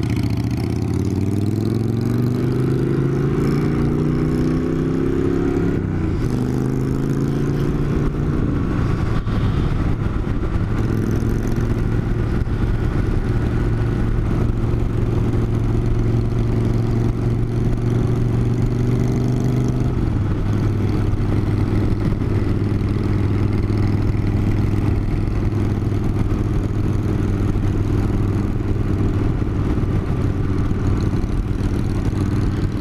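Cruiser motorcycle's twin-cylinder engine pulling away and accelerating, its pitch rising, with a gear change about six seconds in, then running at a steady cruise with another drop in pitch around twenty seconds.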